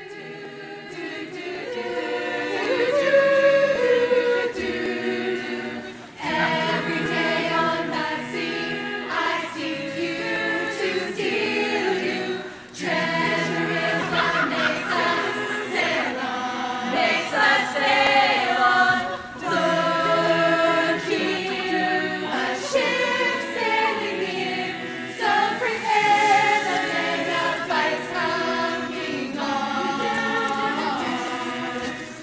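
Large choir singing a cappella in harmony, in phrases with short breaks between them, about six seconds in, again near thirteen seconds and near nineteen seconds.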